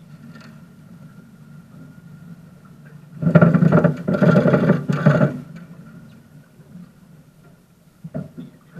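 Boat's outboard motor idling with a steady low hum. About three seconds in, a loud noisy burst lasting about two seconds comes in three surges over the motor.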